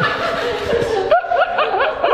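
People laughing, with a quick run of four or five short rising laughs in the second half.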